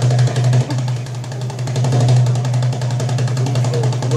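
Egyptian tabla (goblet drum) played live in a fast run of strokes over a steady low drone.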